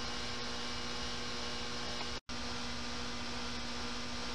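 Steady low electrical hum over a background hiss, with a brief drop to silence about two seconds in where the recording is cut and joined.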